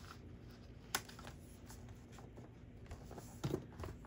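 Faint handling of a paper trimmer and cardstock: one sharp click about a second in, quiet scraping, and a few small clicks near the end.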